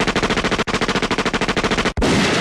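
Machine-gun sound effect played from a podcast soundboard: rapid automatic fire in two bursts, with a brief break about two-thirds of a second in.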